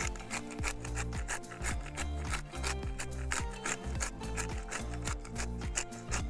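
Hand pepper mill grinding, a rapid rasping crackle of twists repeated through the whole stretch.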